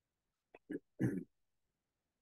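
Two faint clicks followed, about a second in, by one short voiced sound lasting about a quarter of a second.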